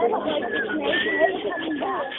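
Several people's voices talking indistinctly, with a couple of short high-pitched gliding sounds from a voice about half a second and a second in.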